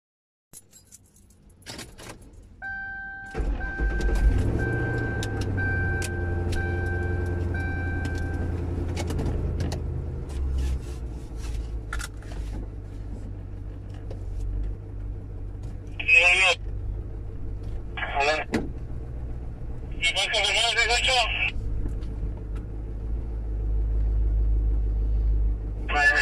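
A vehicle's engine is started after a few clicks, with a dashboard chime beeping over it for several seconds, then keeps running. From about 16 seconds in, an emergency siren gives short warbling yelps, two brief ones and then a longer one.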